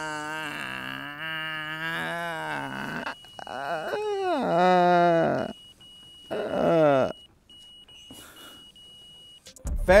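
A man's drawn-out, wordless wailing in three long cries over a thin, steady, high electronic tone like a heart-monitor flatline; the tone cuts off just before the end.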